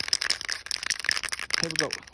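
Aerosol spray-paint can (matte black) being shaken, the mixing ball inside rattling in rapid clicks to mix the paint before spraying; the rattling stops shortly before the end.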